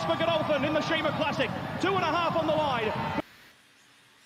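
English horse-race commentator calling the finish of the race in a race broadcast, cutting off suddenly about three seconds in, followed by near silence.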